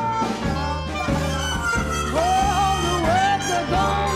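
A vintage New Orleans jazz-style band plays, with upright bass, piano and horns, while a woman sings with vibrato, most strongly in the second half.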